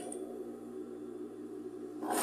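Sewing machine motor humming steadily as pleated fabric is fed under the needle.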